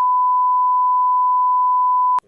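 A loud, steady single-pitch test-tone beep, the kind played over television colour bars, held unbroken without any change in pitch.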